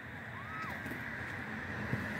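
Steady low outdoor background hiss with no distinct source, and a brief faint rising-and-falling whistle-like tone about half a second in.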